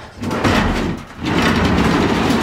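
A grey board being scraped and dragged across a concrete barn floor, in two rough stretches with a short break about a second in.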